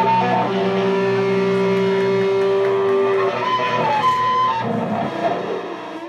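A live band's closing sustained notes from electric guitar and synthesizer, a long held note giving way to sliding pitches a few seconds in, then dying away near the end as the song finishes.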